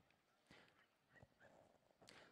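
Near silence: open-air room tone with a few faint, scattered ticks.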